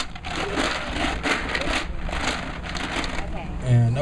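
Raffle balls rattling inside a plastic jar as it is shaken to mix them: a fast, irregular clatter.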